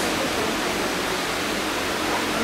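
Steady, even hiss of background noise.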